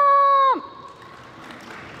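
Audience applauding after a woman's long, held call into a microphone ends about half a second in.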